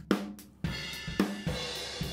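Drum kit heard through a single overhead microphone, heavily compressed by the Sonnox Oxford Dynamics compressor in linear mode: several drum hits with ringing cymbals. The linear mode adds a little bite to the overheads.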